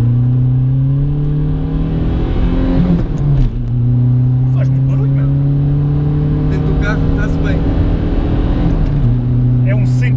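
Tuned VW Bora 1.9 TDI four-cylinder turbodiesel with a straight exhaust from the turbo, accelerating hard in the gears. The engine note rises steadily, then drops with an upshift about three seconds in. It climbs again and shifts once more near the end. Heard from inside the cabin.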